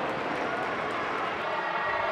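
Steady background noise of a football stadium crowd, a continuous murmur with faint, distant voices.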